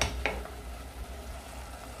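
Wooden spoon stirring chopped tomatoes in a pot, with a light knock against the pot right at the start and again just after. Faint sizzling underneath from the tomatoes simmering down in their released juice.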